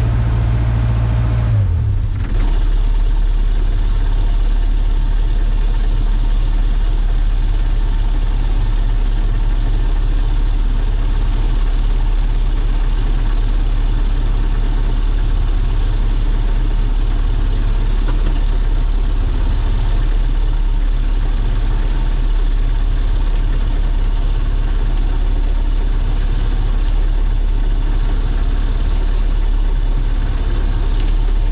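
Small fishing boat's engine running steadily. About two seconds in, its note drops and settles into a lower, even drone.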